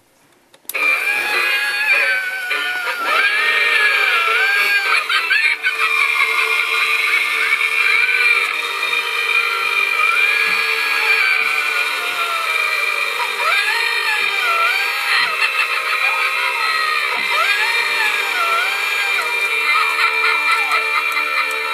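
Gemmy animated floating-ghost Halloween decoration playing its spooky sound effect through its small speaker: an eerie, wavering, sliding melody that repeats in rising and falling swoops, over a steady hum. It starts suddenly about a second in.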